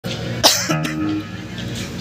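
A single cough close to a live microphone about half a second in, followed by a few stray held instrument notes.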